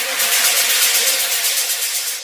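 A hissing, rapidly fluttering rattle-like sound effect, like a shaker, that peaks in the middle and begins to fade near the end.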